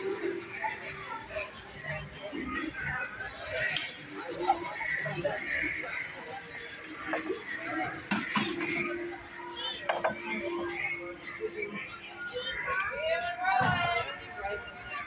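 Busy shop ambience: indistinct voices and background music, with a few sharp clicks and knocks.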